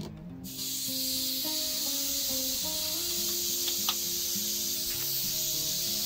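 Steady high hiss of corona discharge from a DIY high-voltage ion thruster's electrodes, starting abruptly about half a second in, with a few faint clicks.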